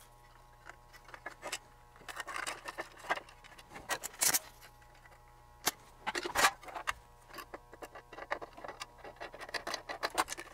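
Scattered small clicks, taps and rustles of hands handling tools and small parts on a workbench, with the sharpest knocks a little after four seconds in and again past six seconds, over a faint steady hum.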